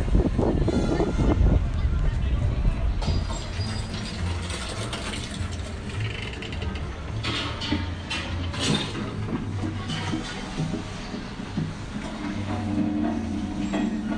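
Spooky sound-effect soundtrack playing inside a Halloween-themed store: irregular mechanical clanking and ratcheting, with a low droning tone coming in near the end.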